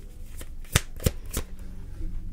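A deck of tarot cards being shuffled by hand, with four sharp snaps of the cards about a third of a second apart.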